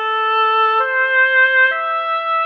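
Oboe melody from notation-software playback: three held notes rising A, C, E, the pitch stepping up about one second in and again near the end.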